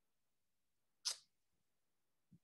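Near silence, broken once about a second in by a short breathy hiss.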